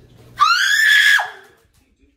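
A person's short, high-pitched scream, rising and then falling, lasting under a second.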